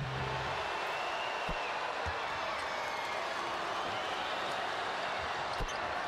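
Steady basketball-arena crowd noise, with a few short thuds of a basketball bouncing on the hardwood court.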